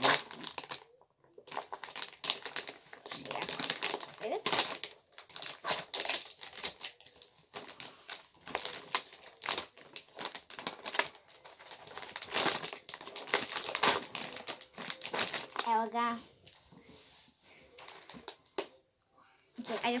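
Snack-mix packaging being opened and handled, crinkling in many short crackles.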